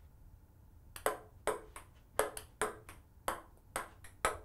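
Ping-pong ball hit back and forth in a quick rally, with a portable SSD used as the bat. It makes a string of sharp, ringing pings starting about a second in.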